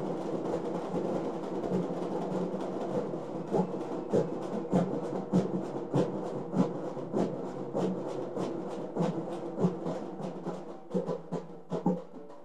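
A troupe of folk drummers beating large frame drums with sticks in a fast, steady rhythm. The beat gets quieter near the end.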